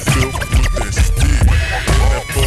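Chopped-and-screwed hip hop beat with turntable scratching over it.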